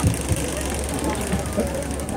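Steady electrical hum and buzz from a stage PA system: a low hum with a fine high-pitched buzz over it, caused by a loose contact in a cable. Faint voices can be heard under it.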